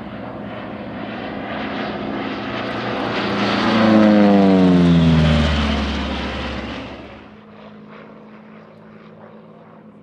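Republic P-47D Thunderbolt's 18-cylinder Pratt & Whitney R-2800 radial engine and propeller in a close flyby. The engine note builds, is loudest about four seconds in, drops in pitch as the aircraft passes, and fades away quickly by about seven seconds.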